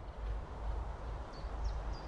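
Wind rumbling low on the microphone, with a small bird chirping faintly in short, repeated high notes from a little past halfway.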